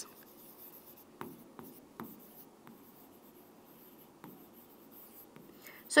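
A marker writing on a board: faint scratching strokes with a few light taps as the tip meets the surface.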